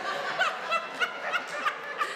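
People laughing, a run of short chuckles coming about three a second.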